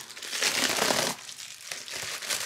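Package wrapping crinkling and rustling as it is pulled open by hand, loudest in the first second or so, then lighter handling rustles.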